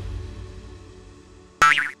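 Cartoon soundtrack: a music swell fades away, then near the end a short comic sound effect with a wobbling pitch cuts in.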